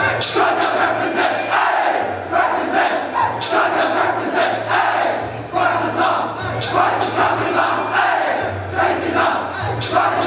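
A large group of teenagers singing and shouting together in unison, loud and continuous, with lines rising and falling every second or so.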